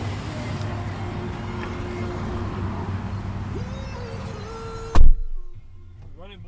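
Pickup truck's driver door slammed shut about five seconds in: one loud thump, after which the outside noise is suddenly muffled inside the closed cab. Before it, a steady outdoor background with a low hum and faint held tones.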